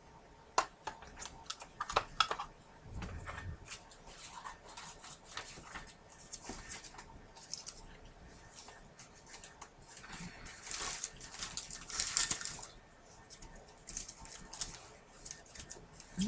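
Scattered clicks, taps and knocks with rustling as craft supplies are handled and searched through for a piece of paper. There is a longer burst of rustling about eleven seconds in.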